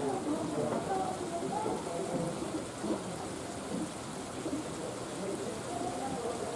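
Several people's voices talking at a distance, overlapping and indistinct, over a steady rushing hiss.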